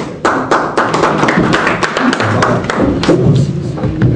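A roomful of people applauding, the clapping starting up about a quarter second in and going on as a dense, steady patter.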